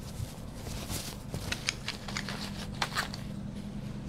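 Rustling and scattered light clicks as a small cloth bag is opened and the wooden discs inside are handled, over a faint steady low hum.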